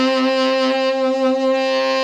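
Tenor saxophone holding one long steady note while the player hums into the horn: more of a hum than a growl, the milder form of the dirty rock and roll tone.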